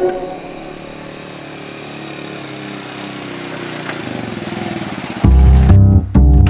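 A motorcycle engine running as the bike approaches, growing slowly louder. About five seconds in, loud background music with a heavy bass and plucked guitar comes in.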